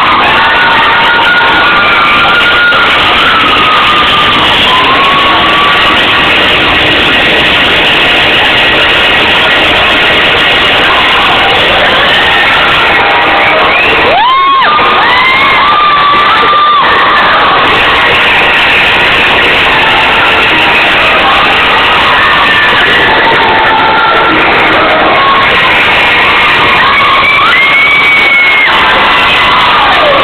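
A crowd cheering and shouting loudly without a break, with single shrill voices rising above it; one loud shout rises and is held about halfway through.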